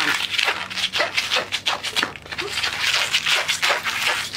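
Yellow latex twisting balloon squeaking and rubbing as hands squeeze it, a run of irregular squeaks while the air is squished along the balloon back toward one end.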